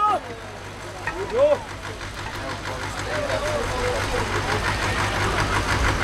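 Short, sharp shouts from the drivers urging on a pair of draft horses hauling a weighted load, with a steady pulsing mechanical rumble that grows louder from about halfway.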